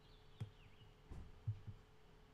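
Quiet room tone with a faint steady hum, broken by a sharp click and then a few soft, low knocks, the sounds of a computer mouse being clicked and handled on a desk.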